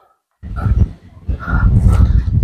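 A cow lowing: a low, rough call that starts about half a second in after a brief silence, in two stretches.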